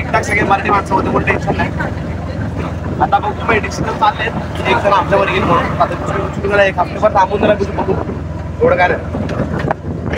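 Steady low engine drone and road noise inside the cabin of a moving bus, with voices talking over it throughout.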